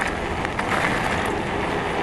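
Wind on the microphone and fat tyres rolling over gravel on a moving e-bike: a steady rushing noise with a few faint knocks from bumps.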